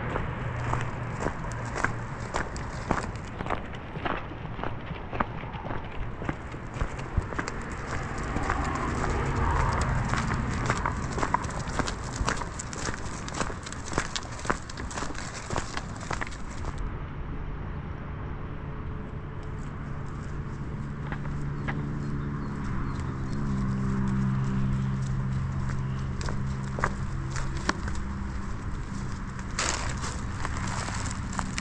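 Footsteps and a pack donkey's hooves on a gravel track, an irregular run of steps and stone clicks. In the second half a steady low drone joins in underneath.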